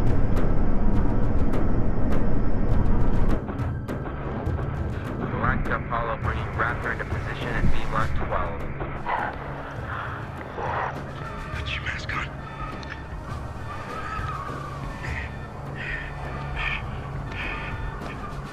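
Drama soundtrack: a loud low rumble for about the first three seconds, then a cut to a quieter score over a low drone, with wordless crying and strained breaths coming and going.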